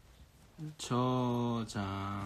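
A man's voice drawing out a long, level-pitched vocal sound for nearly a second, with a second held tone starting just before the end, like a thinking 'uhh' or a hum rather than words.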